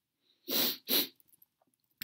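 A person sneezing: two sharp explosive bursts of breath, the second shorter, about half a second apart.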